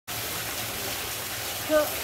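Steady hiss and patter of a spray of hot spring water shooting up from a pipe and falling back onto the pool.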